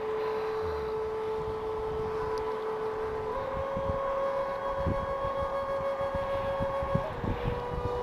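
Wind buffeting the microphone, with a steady whistling tone that steps up in pitch a little over three seconds in and drops back partway near the end.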